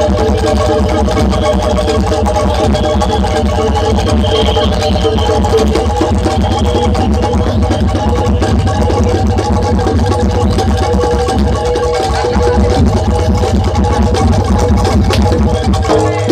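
Loud live music of a Jaranan Dor gamelan ensemble: steady held tones over a dense low pulse that goes on without a break.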